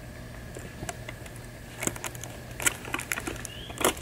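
Handling of sticky tape and a foil-wrapped cardboard cereal box: a few scattered light clicks and crinkles, the sharpest near the end.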